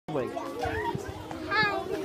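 Many children's voices chattering and calling out at once, with one child's high-pitched voice louder about one and a half seconds in.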